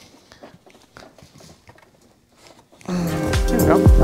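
Faint clicks and handling of a wrench on the crank hub bolts, then background music with a beat starts suddenly, loud, about three seconds in.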